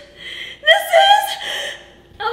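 A high-pitched voice gives one drawn-out, wordless exclamation, a gasp rising into a held "ooh", starting about half a second in and lasting about a second, a reaction of delight at the taste of the food.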